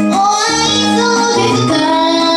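A woman singing a Japanese pop song live, joining in with a rising note a moment in, over her own keytar accompaniment of held keyboard chords.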